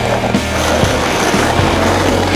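Rock music soundtrack with a held bass note, over skateboard wheels rolling on rough asphalt.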